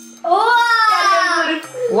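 Speech: one drawn-out, exclaimed "wow", falling in pitch, over steady background music.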